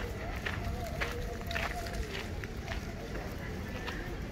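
Outdoor street ambience: indistinct voices of passers-by, with scattered short sounds over a steady low rumble.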